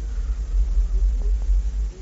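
Steady low rumble with no voice over it.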